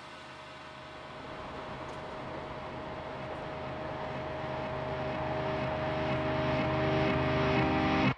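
Atmospheric opening of a symphonic metal song: a noisy, aircraft-like drone with one steady held tone over a low hum, swelling steadily louder as it builds toward the band's entry.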